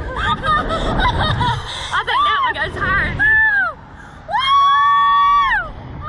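Two women on a slingshot ride laughing and shrieking, with wind buffeting the microphone. Near the end, after a brief lull, one long high scream is held for more than a second.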